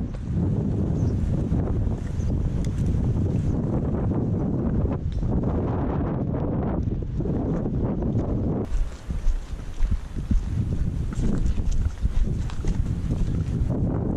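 Wind buffeting the microphone with a loud, uneven low rumble, and footsteps crunching over broken brick and concrete rubble, the crunches clearer in the second half.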